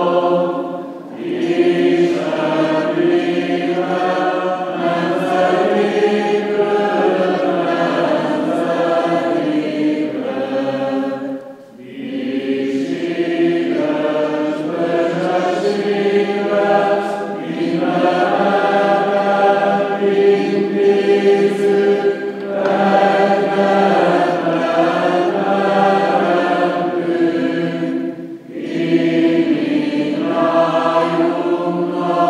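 Choir singing Byzantine-rite Greek Catholic funeral chant a cappella, in long phrases with short breaks about a second in, near the middle and shortly before the end.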